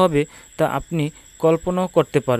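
A man speaking Bengali, with a faint steady high-pitched tone running underneath.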